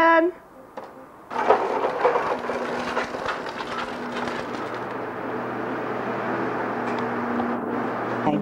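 Hard plastic wheels of a toddler's ride-on trike rolling over a concrete patio: a continuous rolling rattle that starts about a second in.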